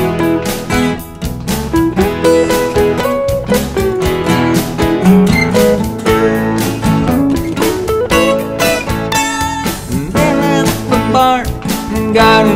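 Twelve-string acoustic guitar played over a recorded backing track: an instrumental break in a country-rock song, with a steady beat underneath.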